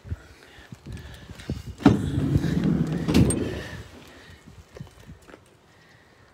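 The Vauxhall Combo van's side sliding door being opened: a click as it unlatches about two seconds in, a rumble as it rolls back along its track, and a knock as it stops at the end of its travel about a second later.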